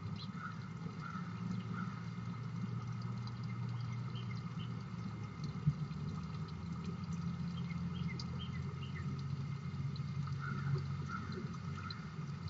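Small birds chirping in short, scattered calls over a steady low rumble and hum, with one sharp tick about halfway through.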